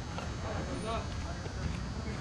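Distant, indistinct voices of people on a ballfield, heard over a steady low rumble.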